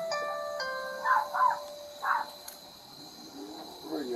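Electronic doorbell chime inside the house playing a multi-note tune, its notes stepping in pitch and fading out within about the first second. Three short, sharper sounds follow between about one and two seconds in.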